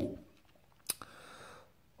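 End of a man's 'ooh' after tasting a beer, then quiet with a single sharp click a little under a second in and a faint breathy exhale just after it.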